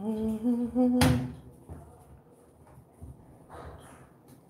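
A voice humming a short wordless phrase of a few steady notes for about a second, cut off by a sharp knock. After that, only faint scrapes as thick brownie batter is stirred with a spoon in a glass bowl.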